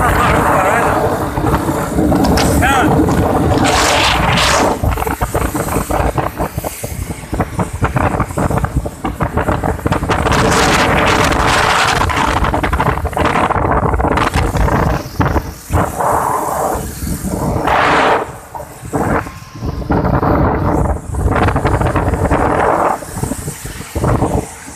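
Wind buffeting the microphone of a camera carried on a moving motorbike, loud and gusty, mixed with vehicle and road noise on a wet street.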